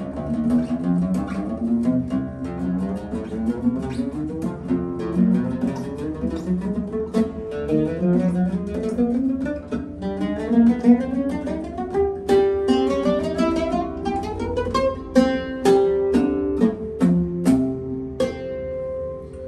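Yildirim oud with a cedar soundboard, played solo with a plectrum. It plays a flowing improvised melody in quick runs of single plucked notes, and in the second half turns to fast repeated picking on held notes.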